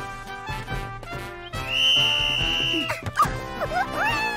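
Upbeat cartoon background music, with one long, steady blast of a referee's whistle about halfway through.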